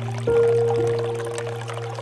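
Soft instrumental music of long held notes, with a new chord entering about a quarter second in, over water trickling and pouring from a bamboo spout into a pool.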